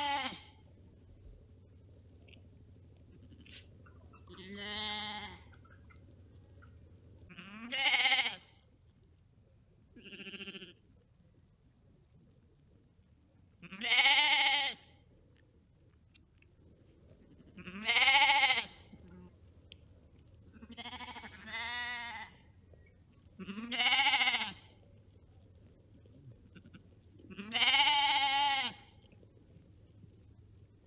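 Sheep bleating: about nine separate baas a few seconds apart, each about a second long and arching up and down in pitch, with a couple of them fainter than the rest.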